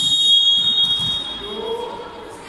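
Volleyball referee's whistle, one long steady shrill blast that fades about a second and a half in, signalling the serve.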